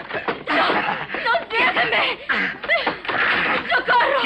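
Wordless voice sounds: a man laughing in short, breathy bursts.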